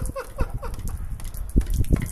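A quick run of short pitched mouth sounds from a person, about five a second, fading out around the middle, followed by a few low thumps near the end.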